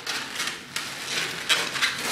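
Inflated latex twisting balloons being twisted and worked by hand, rubbing against each other and against the hands in a run of short scraping rubs.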